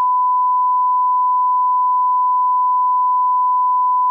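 A bars-and-tone line-up test tone: one steady beep held at a single pitch, unbroken and unchanging in level.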